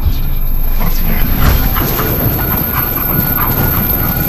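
Short, sharp dog-like animal cries repeated over a dense, loud low rumble, a sound-effect passage rather than sung music.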